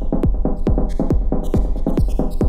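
Electronic dance music loop playing from Ableton Live, with a steady four-on-the-floor kick drum a little over twice a second and hi-hat ticks between the kicks. The top end drops away, then comes back about one and a half seconds in.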